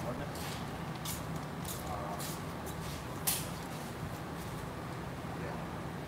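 Tape being pulled and torn in several short, scratchy rips while pinholes in a screen are taped off, the sharpest about three seconds in, over a steady low hum.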